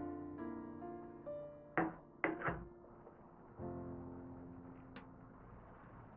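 Gentle background piano music, with three sharp knocks close together about two seconds in.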